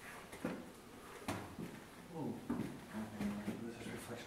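Several soft, irregular knocks, with a low voice murmuring briefly from about halfway through.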